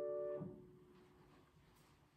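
Upright piano's final chord held, then cut off sharply about half a second in as the keys are released and the dampers fall, with a small thump. Faint room tone follows.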